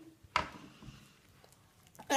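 A single short, sharp click or tap about a third of a second in, then quiet room tone.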